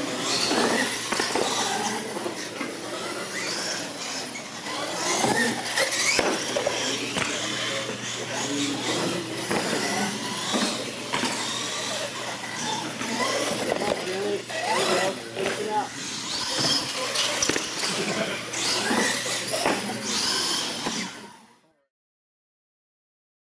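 Radio-controlled monster trucks racing on a concrete floor: motors whining and tires squealing and scrubbing, over indistinct chatter of onlookers in a large echoing room. The sound cuts off suddenly near the end.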